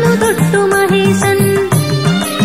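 Malayalam Hindu devotional song: a melody that glides briefly, then holds a steady note over a repeating beat of pitch-bending drum strokes.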